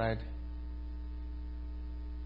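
Steady electrical mains hum in the recording: a constant low drone with a ladder of fainter overtones above it. A man says a single word at the very start.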